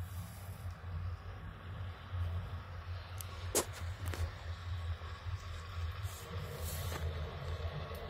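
Low, steady rumble with a few faint clicks and rustles: handling and wind noise on a phone microphone carried on a walk.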